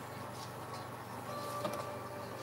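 Steady low mechanical hum in the room, with a few faint light ticks over it.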